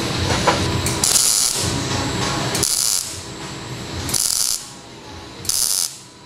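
MIG welder (Millermatic 212 Auto-Set) laying four short tack welds on a metal frame, each arc crackling for about half a second with pauses of about a second in between.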